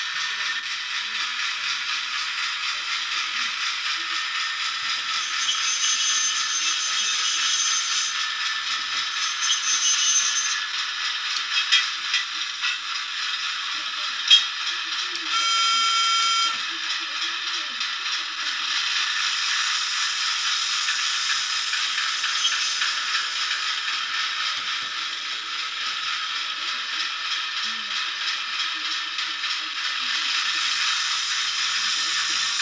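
Class 08 shunter's English Electric six-cylinder diesel engine running with a steady pulse, heard thin, with little low end. Several sharp clicks and knocks come between about 11 and 15 seconds in, and a brief high-pitched tone sounds about 15 seconds in.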